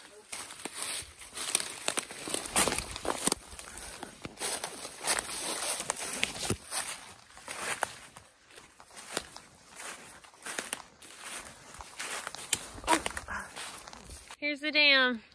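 Footsteps crunching through dry leaf litter at a brisk walking pace, an irregular run of crackling steps.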